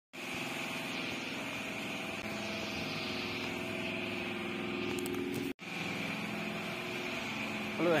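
A steady mechanical drone with a hiss above it, without change in pitch, broken by a sudden brief cut about two-thirds of the way through.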